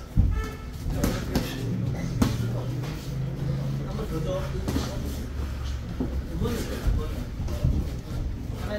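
Boxing gloves landing during sparring: several sharp slaps and thuds at irregular moments, the loudest just after the start and about two seconds in, along with shoes moving on the ring canvas. People talk in the background over a low steady hum.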